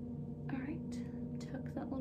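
A woman's quiet whispered muttering with a few short breathy hisses, over a steady low hum.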